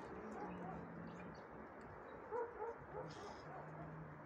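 A frightened cat growling low and drawn out in stretches of about a second, with a few short higher cries about two and a half seconds in.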